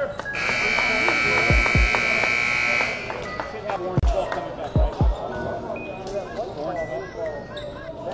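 Gym scoreboard buzzer sounding one steady tone for about two and a half seconds as the clock runs out, marking the end of the second quarter. A basketball bounces on the hardwood floor a few times, twice during the buzzer and three times a little later, over voices in the hall.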